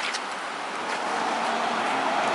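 Steady outdoor background hiss, with no distinct knocks or strokes and little low rumble; a faint steady tone joins near the end.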